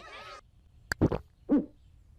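A sharp click about a second in and a brief low thump, then one short hoot from a cartoon owl, falling in pitch, about a second and a half in.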